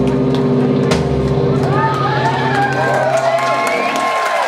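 A band's closing chord on guitars rings out and stops just before the end. From about halfway through, audience members whoop and cheer over it.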